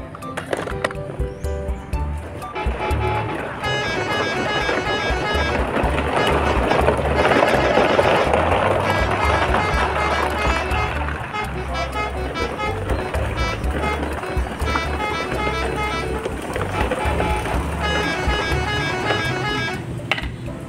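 Background music with a steady beat and a repeating melody. A noisy hiss swells under it in the middle.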